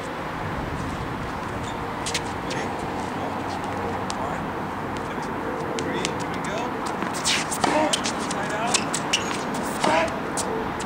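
Sneakers scuffing and squeaking on a hard tennis court during quick footwork, with scattered sharp taps over a steady outdoor hiss; the taps and squeaks come thicker in the last few seconds.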